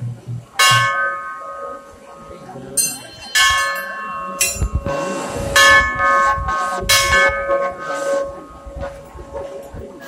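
Temple bells struck repeatedly by worshippers, about half a dozen strikes, each ringing on with a clear metallic tone that dies away slowly, with the strikes overlapping.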